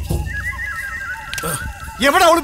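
A high, wavering animal call that steps down in pitch over about a second, over a low rumble at its start.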